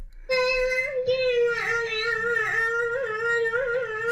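A child singing one long held note that wavers slightly in pitch, starting about a third of a second in.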